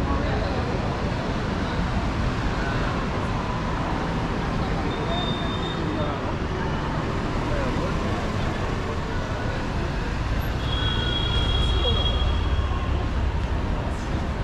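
City street traffic noise: cars running along the road, with a vehicle passing louder about ten to thirteen seconds in, under indistinct chatter of passers-by.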